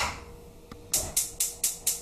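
A knock, then a gas range's burner igniter clicking: five sharp, high clicks about four a second, as the burner is lit.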